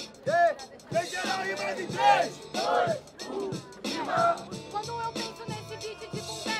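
Boom-bap hip-hop beat playing, with a voice rising and falling over it for the first four seconds or so, then the beat carrying on with steady held notes.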